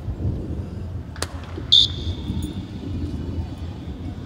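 Steady low outdoor rumble, with a sharp click about a second in and a short, sharp high-pitched sound near the middle that fades out as a thin tone.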